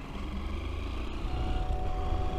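Honda NXR 160 Bros single-cylinder motorcycle engine running under way, a low steady hum that grows slightly louder, with road and wind noise.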